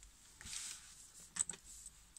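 Faint handling of small craft pieces: a soft rustle, then two small sharp clicks about a second and a half in.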